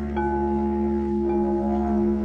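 Glass didgeridoo playing a steady low drone while crystal singing bowls ring over it, a new clear bowl tone sounding just after the start and another at about a second and a half.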